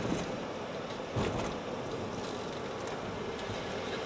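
Steady road noise of a moving car heard from inside its cabin, with a brief knock about a second in.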